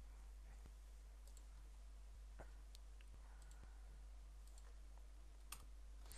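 Faint clicks of a computer mouse button, several scattered over a few seconds against near-silent room hiss, the sharpest about five and a half seconds in.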